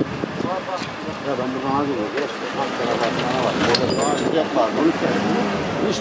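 Several people talking at once, with a vehicle engine running steadily underneath.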